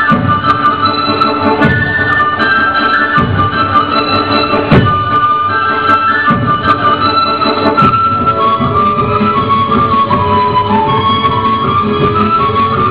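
Instrumental Serbian folk dance music for a kolo: a fast, lively melody over a steady beat, with sharp thuds about every second and a half.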